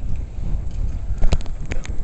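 Wind buffeting the microphone, a steady low rumble, with four sharp knocks in quick succession a little over a second in.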